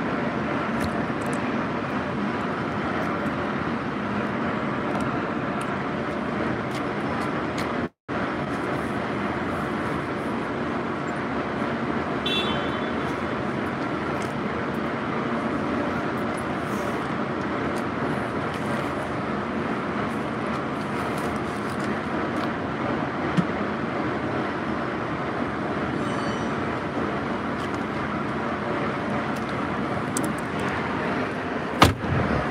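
Steady traffic noise from a city street, an even wash of road sound, which cuts out completely for a moment about eight seconds in.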